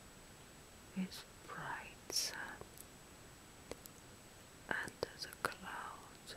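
A woman whispering softly in two short breathy stretches, one about a second in and one near the end, with a few small sharp clicks in between.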